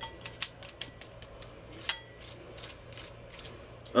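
A metal fork clicking and scraping against a white ceramic bowl of roasted potatoes: a string of light, scattered clicks, with one sharper clink about two seconds in.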